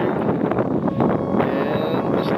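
Wind buffeting the camera microphone: a loud, steady rush of noise with no breaks.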